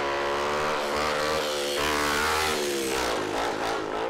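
Motorcycle engine running as the bike rides along, a steady note with small rises and falls in pitch.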